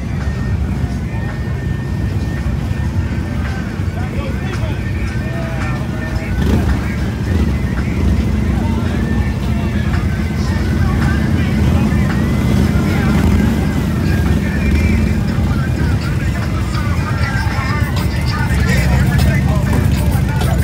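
Motorcycle engines running low and steady as bikes ride slowly past, getting a little louder about six seconds in, over crowd chatter and music.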